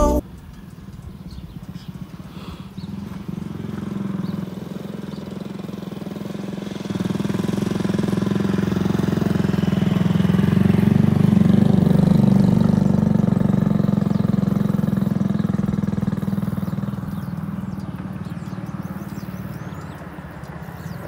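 A small motorcycle engine running steadily. It grows louder through the middle and eases off again near the end.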